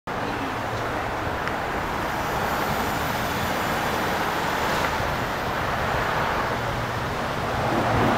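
Steady background road-traffic noise: an even hiss with a faint low hum underneath.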